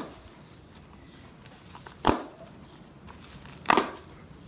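Scissors snipping through tied string twice, a sharp cut about two seconds in and another near the end, with faint plastic-bag crinkling between.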